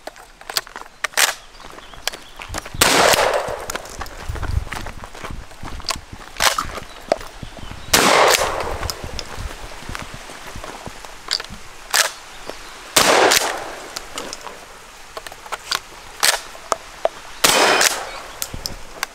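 Four 12-gauge Stoeger pump shotgun shots, roughly five seconds apart, each ringing out after the blast, with smaller clacks between them as the pump is worked and shells are handled.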